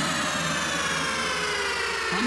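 Breakdown in an electronic DJ remix: the kick and bass drop out and a steady synth sweep plays alone, its many layered tones gliding slowly downward.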